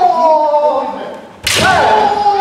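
Kendo kiai from fighters in armour: a long drawn-out shout sliding down in pitch, then about one and a half seconds in a sharp smack as a shinai strike lands, with a fresh yell that rises and is held.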